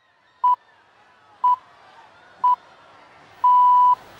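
Greenwich Time Signal pips marking the hour of noon: three short pips a second apart, then a longer final pip near the end, over a faint background hiss.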